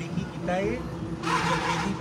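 A man's voice speaking forcefully in short bursts, with a loud breathy stretch in the second half, over a steady low hum.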